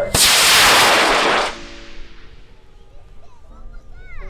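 High-power model rocket motor (an I-540) lighting with a sharp crack and burning with a loud roar for about a second and a half, then the roar trails off as the rocket climbs away.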